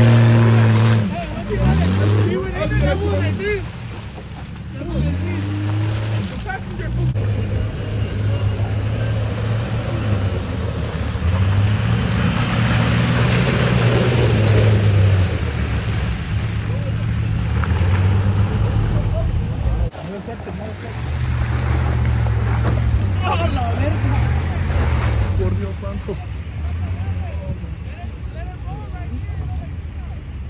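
Off-road vehicle engines revving and labouring as an SUV and then a pickup truck churn through deep mud, the engine note rising and falling. A loud held blast sounds right at the start, and voices shout and laugh over the engines in the first few seconds.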